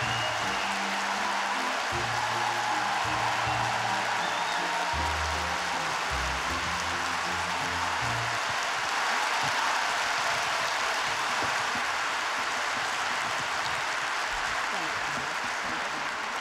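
A large audience applauding steadily, with walk-on music playing a slow low bass line under it for roughly the first half.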